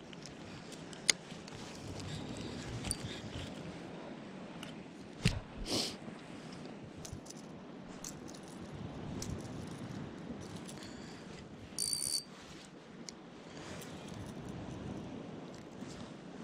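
Light handling noise from a spinning rod and reel: soft rustling with scattered small clicks and knocks, a couple of louder knocks about five seconds in, and a brief high squeak near twelve seconds.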